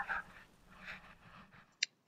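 Quiet room tone with faint low noise and one short, sharp click near the end.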